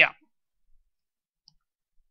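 A man says "yeah" right at the start, followed by near silence broken by two faint, brief clicks.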